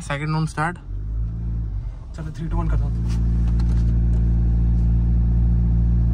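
Steady low engine drone and road noise inside a Mahindra Scorpio N's cabin as it rolls along the highway. The drone grows louder between two and three seconds in, then holds steady.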